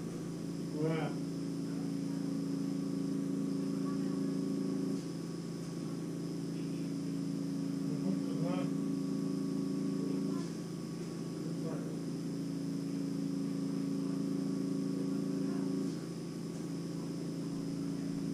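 A steady low electrical hum whose tone shifts every five or six seconds, with a faint steady high whine above it; two short vocal sounds come about a second in and near the middle.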